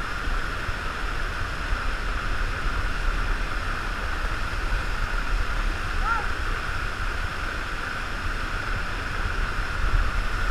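Steady rushing of a FlowRider sheet-wave machine: a fast, thin sheet of pumped water pouring up over the ride surface and breaking into foam, with a low rumble underneath.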